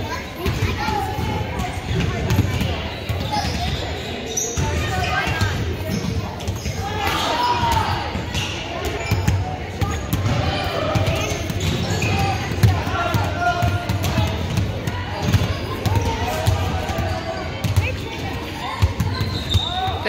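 Many basketballs being dribbled at once on a hardwood gym floor: a dense, irregular patter of bounces. Voices talk in the background, and the whole hall echoes.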